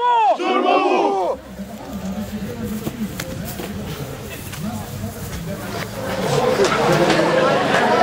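A group of men shouting a chant in unison, cut off about a second in, followed by the murmur of an outdoor crowd with scattered talk that grows louder near the end.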